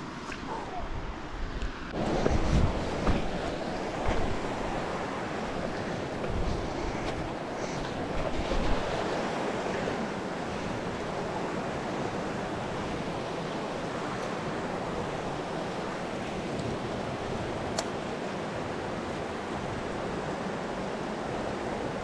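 Creek water rushing over and between rocks in a small cascade, a steady rush, with a few bumps in the first few seconds.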